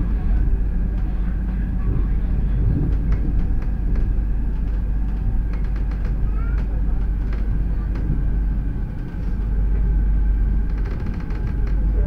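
Hyderabad Metro train running, heard inside the carriage: a steady rumble with a faint high whine and scattered light clicks.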